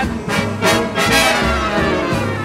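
Swing big-band music: the brass section, trumpets and trombones, plays a punchy instrumental passage between vocal lines over a steady rhythm-section beat.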